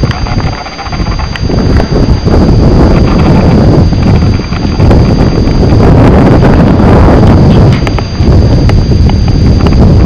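Wind buffeting the microphone in gusts, a loud rumbling rush that builds about a second and a half in and dips briefly twice. A faint steady high-pitched whine runs underneath.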